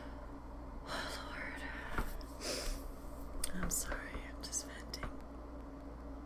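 A woman whispering a few breathy words, between about one and five seconds in, over a steady low electrical hum.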